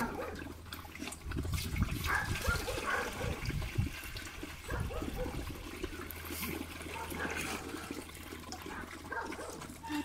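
Water poured from a plastic watering can into dog bowls, splashing, with dogs crowding around making small dog sounds.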